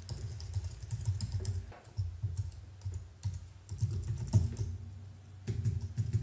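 Computer keyboard typing: irregular runs of key clicks with short pauses, as a username and password are typed in.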